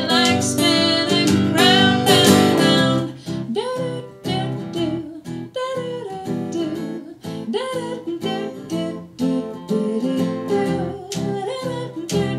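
Live acoustic song: plucked guitar with a manual typewriter's keys clacking as percussion, and a woman singing over it. The music is loudest in the first three seconds, then goes on more softly.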